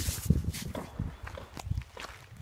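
Footsteps crunching on a pebble-and-gravel riverbank: an uneven run of steps, loudest in the first second.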